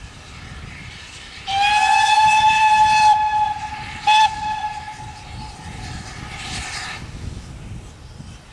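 Steam locomotive whistle sounding at a steady pitch: a loud blast of about a second and a half, a short sharp toot about a second later, then the whistle trailing on more softly for a couple of seconds. Steam hiss and the low rumble of the approaching train lie underneath.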